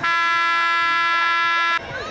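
Stadium scoreboard horn sounding one steady, loud blast that lasts nearly two seconds and cuts off sharply, signalling the end of the first quarter.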